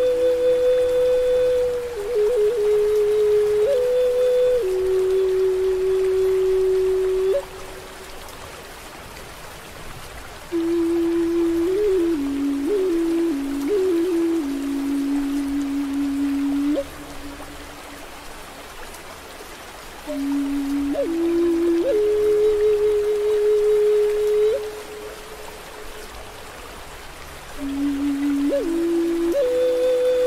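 Native American flute playing slow phrases of long held notes with quick fluttering ornaments, four phrases with pauses between them, over a steady bed of rain and running water.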